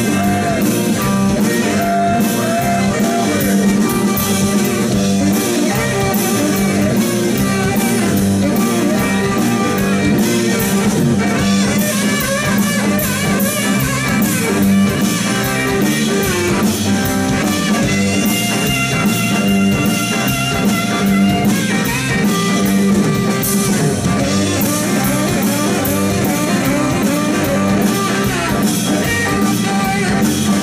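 Blues-rock band playing live, an instrumental stretch with no singing: electric guitar, saxophone, electric bass and drum kit, loud and steady.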